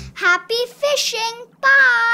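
A young child's high voice calling out in three short phrases, the last one held longest. A strummed guitar tune stops just as the voice begins.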